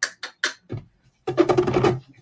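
Hand-pump spray bottle squirted three or four quick times onto a glass craft mat, each squirt a short hiss. About a second later comes a louder, denser sound lasting under a second.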